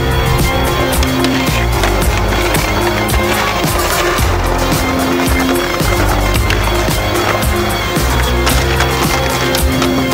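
A music track plays, mixed with skateboard sounds: wheels rolling on paving and the board clacking and scraping against stone ledges.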